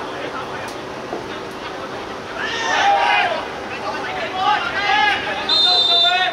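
Players shouting on the pitch, then one short, high blast of the referee's whistle near the end, stopping play for a foul.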